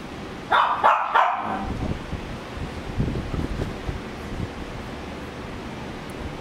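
A small dog gives a quick burst of about three short barks about half a second in, followed by low rustling.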